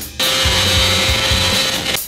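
Racing motorcycle engine heard through an onboard camera, held at high revs at a steady pitch, with rushing wind noise.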